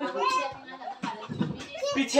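A small child's voice with other voices: short calls and chatter that come and go, with brief pauses between.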